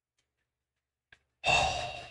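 A man's sudden, loud sigh, a sharp breath out that starts about one and a half seconds in and trails off, with a faint click just before it.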